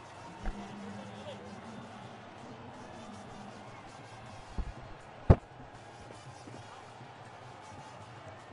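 Low background noise of a cricket ground's broadcast audio, with a few knocks and one sharp, loud crack about five seconds in.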